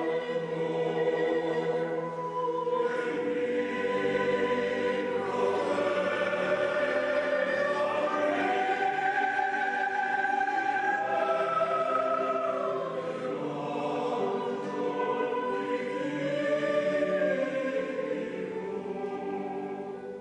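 A choir singing slow, sustained chords, several voice parts moving together. The singing dies away at the very end.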